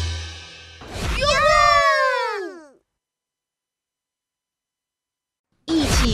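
The music of a children's song fades out. A high cartoon-style voice follows, a long 'ahh' that rises briefly and then slides down in pitch for about two seconds. Then there is silence until a voice starts speaking just before the end.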